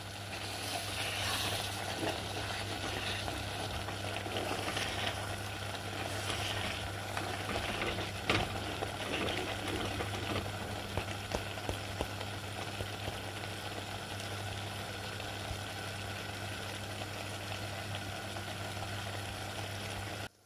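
Beetroot curry in coconut milk simmering and sizzling in a clay pot, with a wooden spoon stirring and scraping through it during the first half, over a steady low hum.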